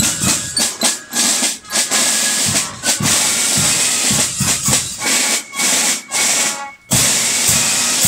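Marching drum corps playing: quick snare drum strokes and cymbal crashes over a constant bright hiss, with a brief drop just before the end.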